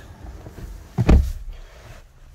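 A person climbing into a car's driver's seat: faint rustling, then a heavy low thump about a second in as he drops onto the leather seat.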